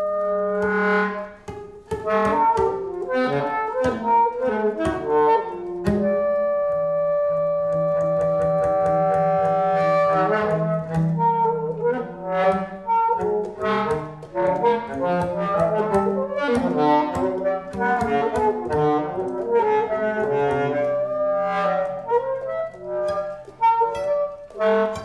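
Free improvisation for saxophone and a plucked string instrument: a dense run of short, quick plucked notes under saxophone lines. About a quarter of the way in, the saxophone holds one long note for a few seconds.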